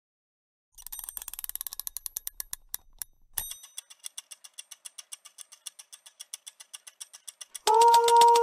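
Clockwork mechanism ticking as a percussion part: a quick run of clicks that slows down, a sharper click, then steady ticking about seven times a second. Near the end a sustained sung chord comes in with typewriter clicks over the ticking.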